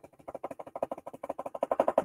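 A drum roll sound effect: fast, even drum strokes.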